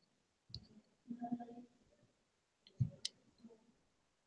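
A few faint, isolated clicks and soft knocks, with a sharp click about three seconds in, as of hands on a laptop or desk near the microphone. A brief faint hum, like a voice, comes about a second in.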